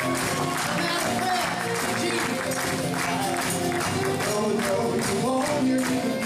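Live folk band playing a chorus with group singing, fiddle and acoustic guitar, over a steady beat of audience hand claps and cowbells.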